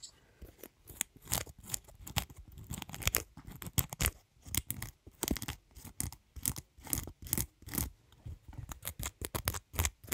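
Irregular run of short, crisp snipping and crackling handling sounds, two or three a second, from hands working an object close at hand.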